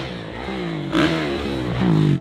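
Dirt bike engine revving under hard throttle on a motocross track, its pitch falling and rising as the rider works the throttle and gears, loudest about a second in and again near the end.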